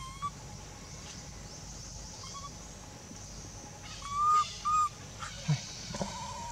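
Infant long-tailed macaque giving short, high coo calls, the cries of a baby wanting its mother: two faint ones early, then two louder ones about four seconds in.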